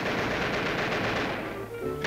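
A loud, dense, very rapid rattle on a cartoon soundtrack. Its upper part dies away about a second and a half in.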